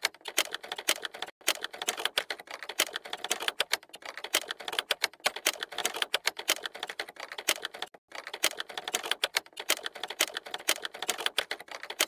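Rapid typing: a dense, irregular run of key clicks that goes on throughout, with a brief pause about eight seconds in.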